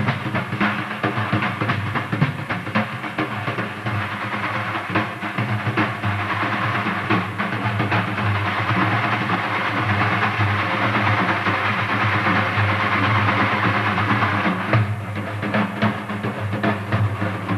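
Daf frame drums played in a fast, dense roll, the metal rings inside the frames jingling continuously. The rolling rattle grows fuller in the middle and eases off briefly about fifteen seconds in.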